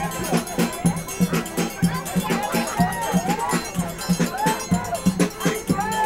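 Live dance music with a steady, quick beat: a deep bass drum thumping under bright, ringing metallic strikes, in the style of a forró band with zabumba and triangle. Voices rise and fall over it.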